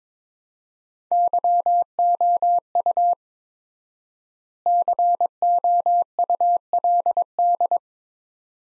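Computer-generated Morse code at 22 words per minute: a single steady tone keyed in dits and dahs, sending two words with a pause of about a second and a half between them. It is the first sending of the pair 'you could', which is spoken just afterwards.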